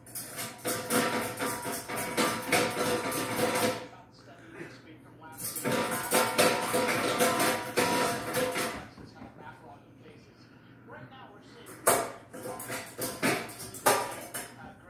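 A small dog rattling and clanking its stainless steel bowl against a raised feeder stand in two long bouts of rapid, ringing metal clatter, then a couple of single knocks near the end. This is how the dog asks for food or water.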